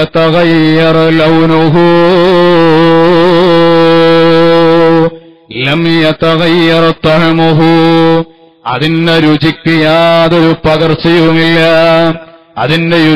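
A man's voice chanting in a drawn-out, ornamented melody, holding one long wavering note for about five seconds. Shorter chanted phrases follow, with brief breaks between them.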